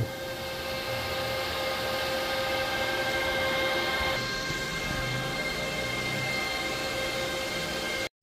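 Antminer S21 Bitcoin miner running under full hashing load: its cooling fans make a steady rushing noise with several steady whining tones over it. The mix of tones shifts slightly about halfway through.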